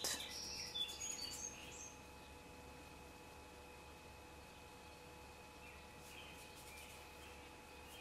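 Birds chirping faintly: a quick run of short high notes in the first two seconds, then a few softer chirps about six seconds in.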